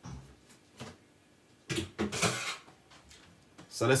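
Kitchen handling noises: a light knock at the start and a louder handling sound lasting under a second about halfway through, as a metal mesh strainer is fetched and set on a glass measuring jug.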